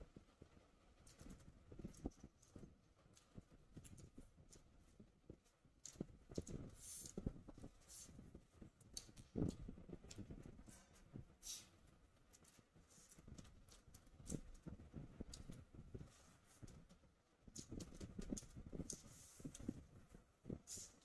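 Faint, close-miked chewing and mouth sounds of a person eating chicken biryani by hand: irregular soft smacks, clicks and thumps.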